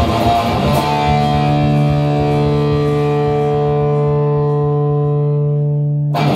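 Electric guitar played with a strummed figure, then a chord struck about a second in and left ringing steadily for about five seconds.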